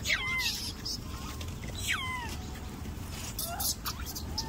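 Rhesus macaques giving two shrill squeals that fall in pitch, one at the start and one about two seconds in, while crowding for food.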